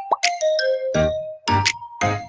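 Cheerful, bouncy quiz-game background music with a steady beat and a chiming, bell-like melody. A short plop sounds right at the start.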